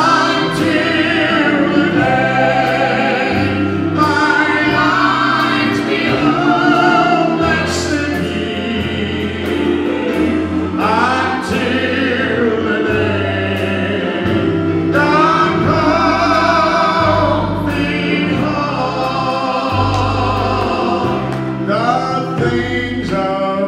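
Live gospel music: a church band with electric bass, drums and keyboard plays a slow song while singers hold long notes with vibrato.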